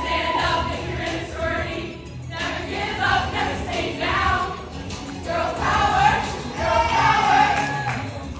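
A group of women singing a song together over accompanying music with a steady low bass line.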